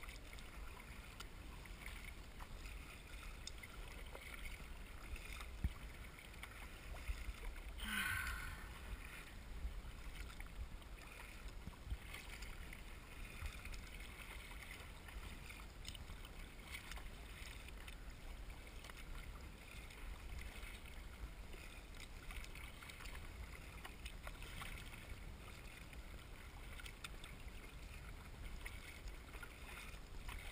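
Water splashing and lapping against the hull of a kayak as it is paddled through choppy water, over a steady low rumble, with one louder splash about eight seconds in.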